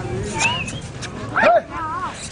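Men's shouts and short high-pitched yelps, urging on a tethered jallikattu bull as it is provoked with a waved cloth. There is an arched call about half a second in, a louder rising yelp about one and a half seconds in, and wavering calls near the end.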